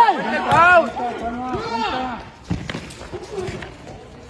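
Men shouting loudly at a street football match for about two seconds, then a single sharp thud of a football being kicked on a concrete court about halfway through, with quieter voices around it.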